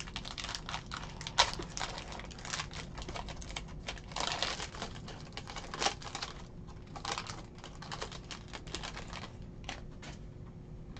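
Foil wrapper of a trading-card pack crinkling and tearing as it is opened by hand, then the cards clicking together as they are pulled out and handled. A continuous run of quick small clicks and rustles, with one sharp snap about a second and a half in.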